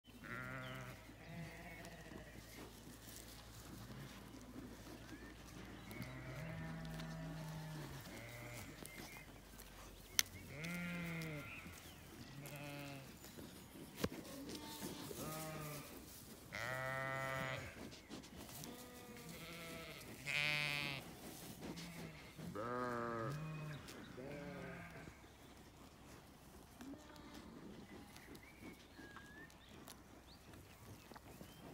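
Zwartbles sheep bleating repeatedly, about fifteen calls of half a second to a second each, at differing pitches from more than one animal. Two sharp clicks fall between the calls.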